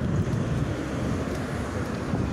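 Low, steady rumble of a helicopter flying over, mixed with street traffic, with wind buffeting the microphone.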